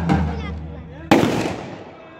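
The davul and zurna music stops at the start, its last notes ringing out; about a second in, a single sharp bang of a torpil firecracker goes off and dies away over about half a second.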